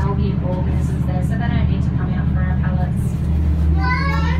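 Steady low engine drone of a semi-submersible tour boat, heard from inside its underwater viewing cabin, with passengers talking faintly over it.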